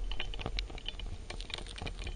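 Underwater crackle of many sharp, irregular clicks over a shallow rocky reef, several every second, heard through a submerged microphone.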